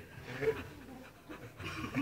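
A man laughing softly and breathily under his breath, with a short louder burst about half a second in.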